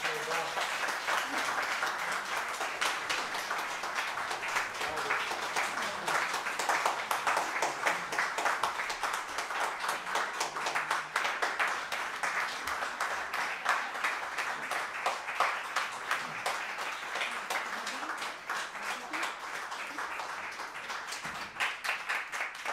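Audience applauding with steady clapping, a few voices mixed in among it.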